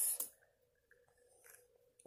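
A spoken word trails off at the start, then near silence with a faint steady hum and a couple of faint soft clicks from plastic action-figure armor being handled.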